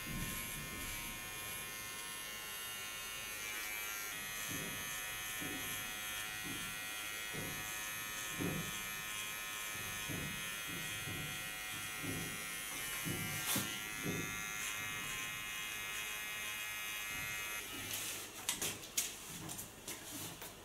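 Electric hair clipper running with a steady high buzzing whine as it carves a thin tattoo line into closely cut hair on the side of the head. The buzz stops about two seconds before the end, followed by a few clicks and rustles.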